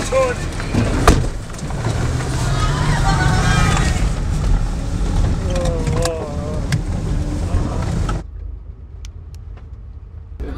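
Vehicle engines rumbling steadily as a convoy with a police motorcycle escort moves off, with voices calling over them and a sharp knock about a second in. A little after eight seconds the sound cuts to a quieter, muffled hum inside a bus.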